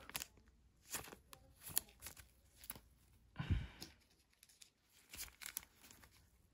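Quiet handling of trading cards and a plastic pack wrapper: a few scattered light clicks and taps, with a short crinkle and dull thump about halfway through.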